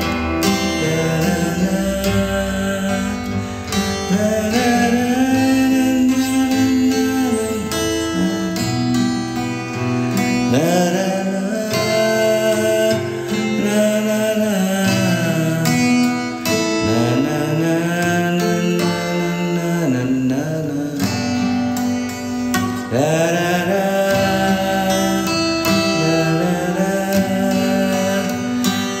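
A man humming a melody while playing chords on an acoustic guitar, his voice gliding smoothly between long held notes.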